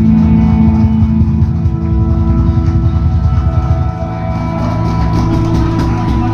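A live acoustic-rock band holding a sustained closing chord on guitars and bass, with rapid drum hits running under it.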